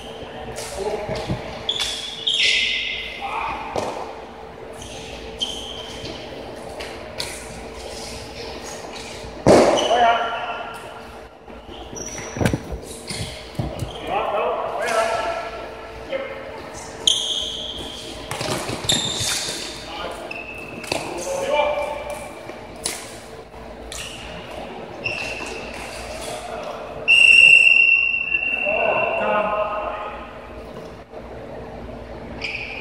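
Floorball game play in a large, echoing gym: sharp clacks of sticks on the plastic ball, short high squeaks of shoes on the wooden floor, and players shouting to each other.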